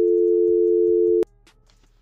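Telephone line tone, a steady two-note hum, that cuts off with a click a little over a second in: the other end has hung up on the call.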